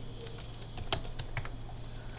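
Computer keyboard typing: a handful of sharp key clicks, mostly about a second in, over a low steady hum.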